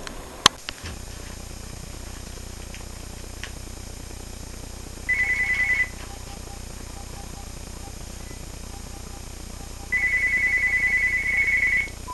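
A phone ringing twice with a rapidly trilling electronic tone: a short ring of under a second about five seconds in, then a ring of about two seconds near the end. A sharp click comes about half a second in, and a steady low hum runs underneath after it.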